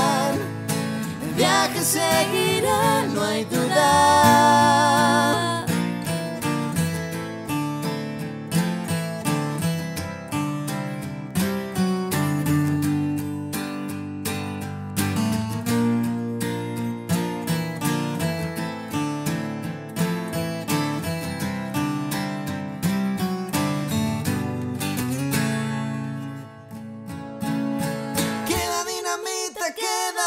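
Acoustic guitar strumming through an instrumental break in a song, with a voice holding a wavering note for the first few seconds. Near the end the low part drops away, leaving the music thinner.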